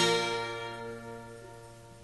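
Final chord of an Albanian folk song ringing out: held plucked-string tones dying away steadily to a faint trail.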